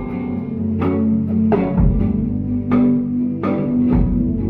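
Live band music: amplified guitar and bass playing sustained low notes over a steady beat, with a sharp strike about every three-quarters of a second.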